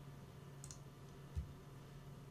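Quiet room tone with a steady low hum. One faint, short click comes about half a second in, and a soft low thump comes a little past the middle.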